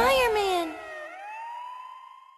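A siren wailing: its pitch swoops up and down, then climbs again and holds, growing fainter as it fades out.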